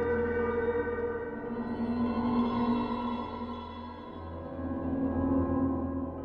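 Fluffy Audio AURORROR cinematic horror instrument in Kontakt played from a keyboard: the 'Abandoned Hospital' soundscape patch, a dark sustained texture of held bell-like tones layered with a shimmering pad. It swells, dips about four seconds in, then swells again as new notes come in.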